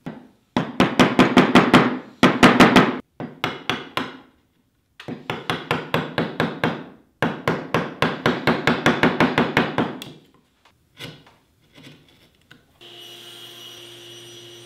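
Mallet striking a bench chisel to chop rabbets into a wooden rail, in quick runs of about seven blows a second with short pauses between them, then a few single taps. Near the end a steady hum begins.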